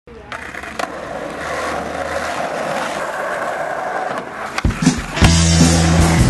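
Skateboard wheels rolling on rough asphalt, with two sharp clacks of the board hitting the ground in the first second. About five seconds in, loud guitar rock music cuts in.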